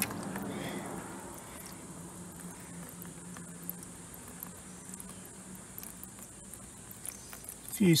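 A thin stream of flood water trickling and splashing steadily onto a plastic mower deck as it drains from a Gardenline lawn mower engine's crankcase. The crankcase holds water where the oil should be.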